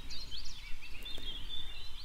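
Small birds chirping and twittering: many quick, high chirps over a faint low rumble.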